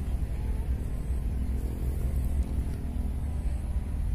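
Steady low outdoor rumble, with a faint hum in the middle and no clear event.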